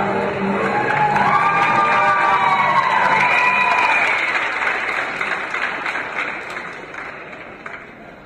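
Audience applauding and cheering in a large hall as the dance music ends within the first few seconds. The applause fades away over the last few seconds.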